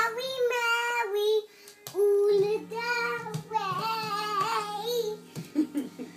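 A young girl singing in long held notes, stopping about five seconds in.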